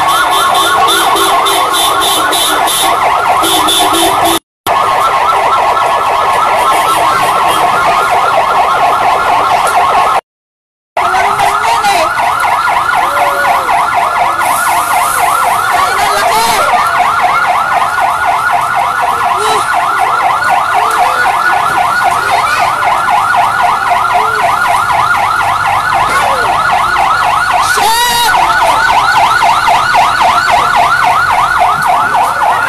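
Emergency vehicle siren sounding in a fast yelp, its pitch sweeping up and down several times a second. The sound cuts out briefly twice.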